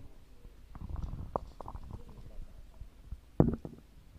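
Scattered low knocks and rustles, the loudest knock about three and a half seconds in.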